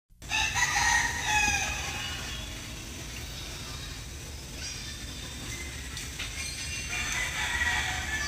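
A long, bending crowing call from a fowl, about a second and a half long, near the start, and another near the end, over a low steady hum.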